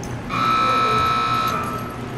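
An electric buzzer sounds once, a steady high-pitched tone lasting a little over a second.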